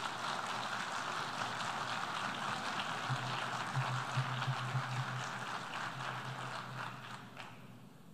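Audience applause in a large assembly hall, a steady clatter of many hands that dies away near the end.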